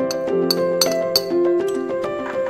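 Background music with sustained, steady notes. Over it, four sharp glassy clinks about a third of a second apart: a utensil tapping a glass mixing bowl as baking powder is added to the flour.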